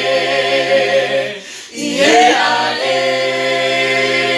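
A small group of voices singing amagwijo a cappella, holding long notes in harmony over a low sustained part. About a second and a half in, the singing drops away briefly, then the voices come back in, sliding upward into the next held chord.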